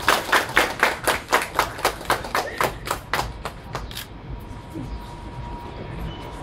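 A small group of people applauding, a run of quick claps that thins out and fades away about four seconds in.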